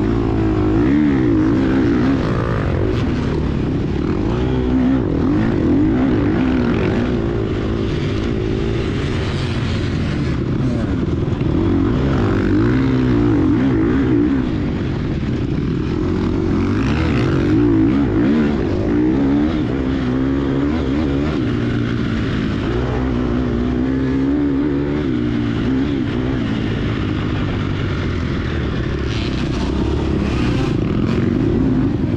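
The engine of a 2022 Gas Gas EX250F, a 250 cc four-stroke single-cylinder dirt bike, heard from on the bike while it races. The revs rise and fall continuously with the throttle and gear changes.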